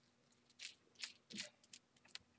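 Faint, short clicks and scratches, about seven in two seconds, from a small metal nut and black plastic connecting pieces being handled and turned onto a banana jack's threaded stud.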